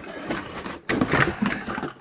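Cardboard packaging scraping and rustling as a light fixture is pulled out of its box and cardboard insert, loudest about halfway through.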